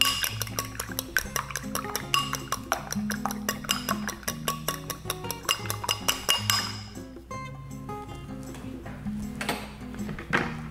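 An egg being beaten in a small glass bowl: the utensil clinks rapidly and steadily against the glass, then the clinking stops about seven seconds in. Background music plays throughout.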